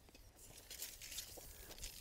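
Faint, irregular rustling and crinkling starting about two-thirds of a second in, over an otherwise near-silent background.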